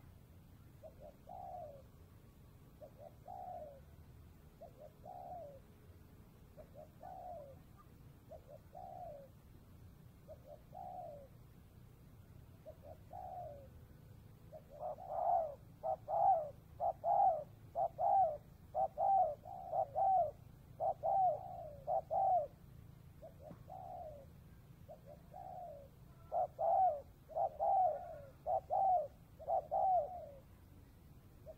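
Spotted dove cooing: soft coos spaced about two seconds apart, then from about halfway a loud, fast run of coos, a short lull, and another loud run near the end.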